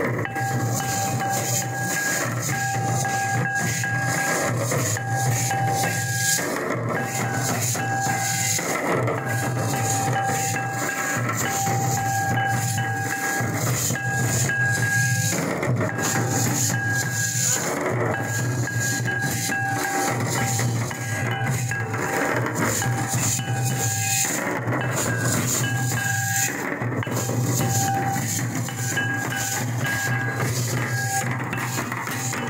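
A group of large double-headed barrel drums beaten with sticks in a steady, loud, continuous rhythm. A held high tone above the drums breaks off and comes back every few seconds.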